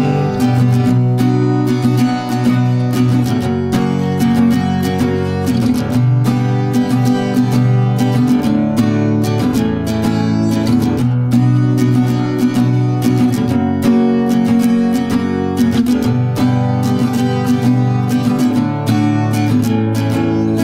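Acoustic guitar strummed in a steady rhythm: an instrumental break between verses, with no singing.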